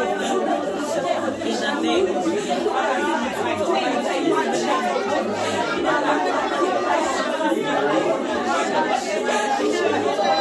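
Many people praying aloud at once, their voices overlapping into a steady, unintelligible chatter of group prayer.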